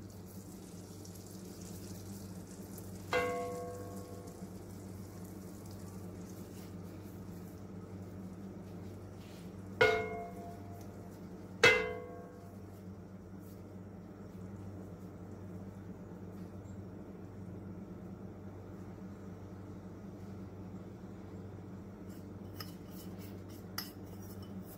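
Three short ringing clinks of a ceramic bowl knocking against a cast iron skillet as sugar is shaken out of it, the second and third close together, over a steady low hum.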